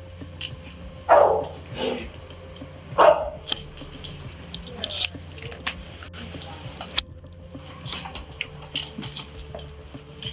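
A dog barking indoors: two loud, short barks about one and three seconds in, with a weaker one between them, followed by light clicks and knocks.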